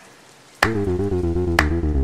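Background music starts with a sharp hit about half a second in, then carries on as a deep bass note under a wavering melody, with another sharp hit near the end.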